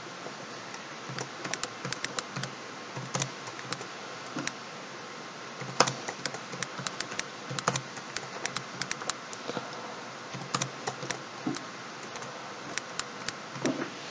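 Typing on a computer keyboard: irregular bursts of sharp keystroke clicks with short pauses between words, over a steady background hiss.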